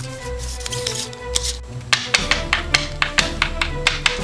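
Background music with sustained notes over a bass line. In the second half comes a quick, even run of sharp taps, about five a second.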